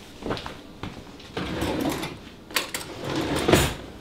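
Handling noise: irregular rustling and shuffling as a bowl and spoon are moved about, with a couple of light knocks in the second half.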